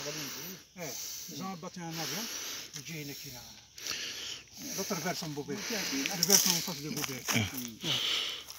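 Speech: voices talking in short phrases with brief pauses.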